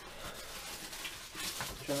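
Quiet room tone: a faint low hiss with light handling or rustling noise, then a man's voice starts just at the end.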